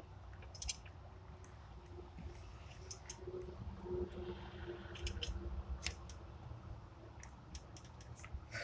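Faint, irregular small metal clicks from hands working among the rocker arms and valve springs of an open engine, over a low steady rumble.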